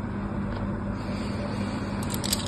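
A steady low hum with a hiss of background noise, with no distinct scraping or tapping.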